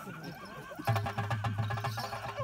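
Hand-played barrel drum of the Therukoothu accompaniment starting about a second in, with fast, even strokes over a steady held tone.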